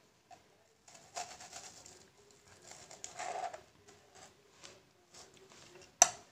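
Kitchen knife cutting frozen strawberries on a plastic cutting board: faint, scattered cuts and taps of the blade on the board, with a sharper knock near the end.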